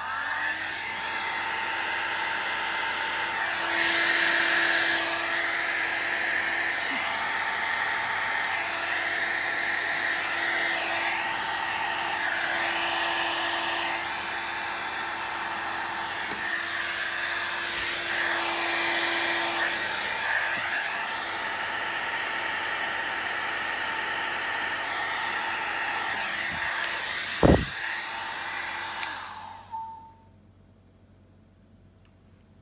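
Handheld electric blower running steadily, blowing air onto wet alcohol ink to push and spread it. There is one sharp click shortly before the blower shuts off near the end.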